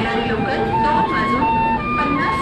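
Bamboo flute (bansuri) playing a melody of short held notes that step up and down in pitch, with voices and crowd bustle behind.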